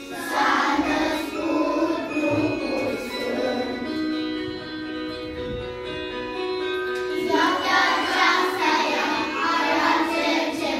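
A class of young children singing a Romanian Christmas carol (colind) together. In the middle they hold long drawn-out notes for a few seconds, then go back to shorter sung syllables about seven seconds in.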